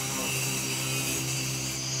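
Angle grinder with a cutting disc running through a marble slab: a steady motor whine over a hiss from the cut.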